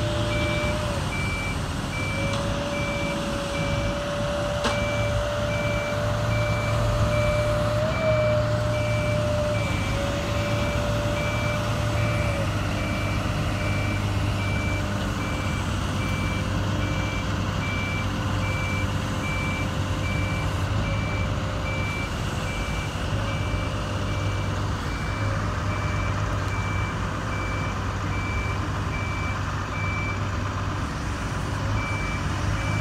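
A backup alarm beeping steadily and evenly over the drone of a heavy diesel engine, as a crawler crane lifts and swings a long bridge beam. A steady machine whine holds, breaks off and comes back a few times in the first half, then fades.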